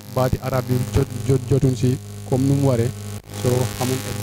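A man speaking into a handheld microphone, in a steady stream with short breaks, over a constant low electrical hum.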